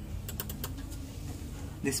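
About five quick, light clicks a third to two-thirds of a second in, like keys being tapped, over a steady low hum.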